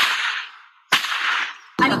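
Two sharp cracks about a second apart, each dying away over about half a second, followed by the start of a woman's speech near the end.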